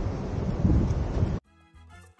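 Wind rumbling on the camera microphone, cut off suddenly about a second and a half in when background music with a beat begins.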